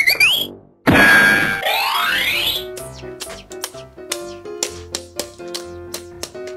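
A sudden burst with a rising sweep about a second in, lasting a second or two, then light, bouncy children's background music with short plucked notes in a steady rhythm.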